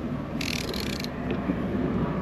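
Outboard motor being turned over by hand with a 36 mm socket on top of the crankshaft, spinning over smoothly, with a hiss about half a second long shortly after the turn begins. The smooth turning is taken by the owner as a sign that the motor is probably in good shape.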